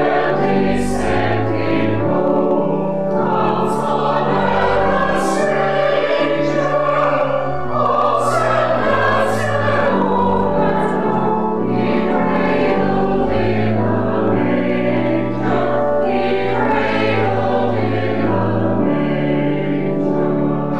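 Church congregation singing a Christmas carol together, accompanied by organ holding long bass notes.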